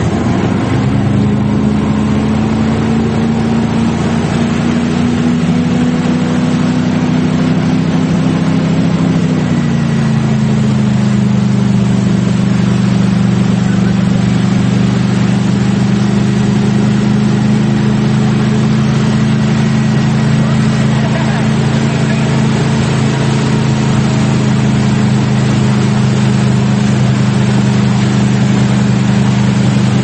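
Tow boat's engine running steadily at speed, heard from on board, its pitch dropping a little about ten seconds in and then holding. Water rushing from the wake and wind noise run underneath.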